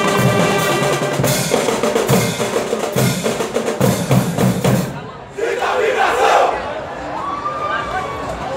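Marching band playing brass and drums, with repeated drum strokes, cutting off about five seconds in. Crowd cheering and shouting follows.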